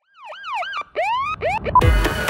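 Opening of an electronic bass house track: a synth swooping up and down in quick siren-like glides, then a heavy bass hit about two seconds in as the full beat comes in.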